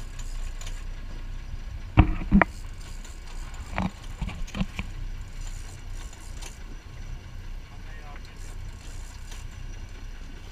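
A boat's engine running with a low, steady rumble. Two sharp knocks about two seconds in are the loudest sounds, followed by a few shorter, softer sounds around four seconds in.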